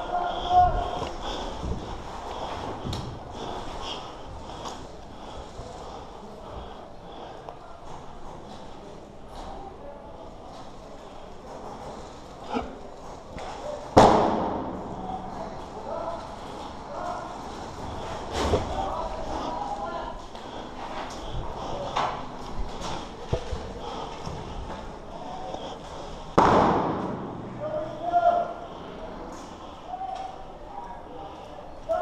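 Three sharp knocks, about fourteen, eighteen and twenty-six seconds in, each ringing out in a bare concrete-block room, over scattered small clicks and faint voices.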